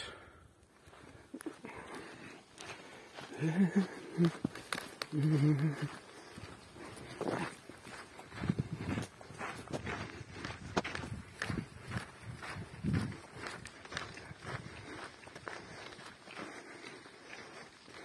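Footsteps of walkers on a dirt-and-gravel trail: a steady run of light crunches and clicks at walking pace. Brief voices a few seconds in.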